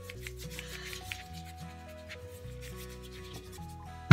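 Paintbrush rubbing over damp watercolor paper in short, irregular scrubbing strokes as the sheet is wetted, over soft background music with held notes.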